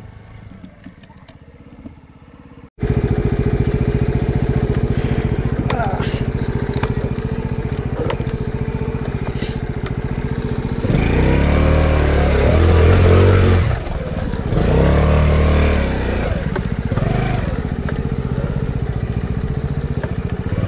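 Small single-cylinder scooter engine, a Runner Kite Plus, running steadily at idle after a quieter first few seconds, then revved up twice near the middle before settling back.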